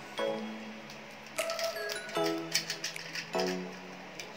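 Background music with held notes. Light clicks and ticks are heard under it, from a sealed plastic bottle of hair treatment being handled and opened.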